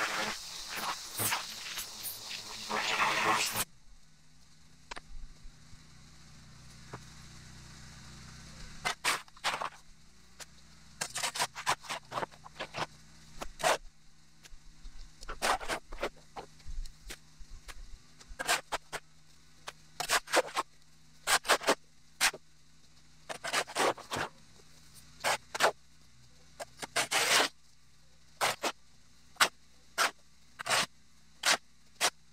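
A loud rushing spray noise cuts off about three and a half seconds in. After it comes a long run of short, irregular scrapes, a shovel scraping dirt off a buried concrete sidewalk, over a faint steady low hum.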